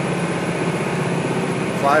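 Steady drone of a 65 Ocean motor yacht's engines at cruising speed, about 22 knots, heard inside the salon, with an even rush of noise over it.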